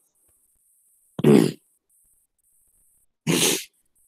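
A person coughing twice, once about a second in and again near the end, each cough short.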